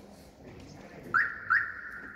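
A high, shrill whistle-like tone that starts twice, about half a second apart, each time with a quick upward chirp. The second is held steady for over a second.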